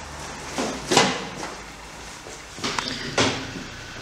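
A steel-framed engine generator being wheeled across a concrete workshop floor on a pallet truck: a low rolling rumble with sharp metallic clunks about a second in and twice near the end.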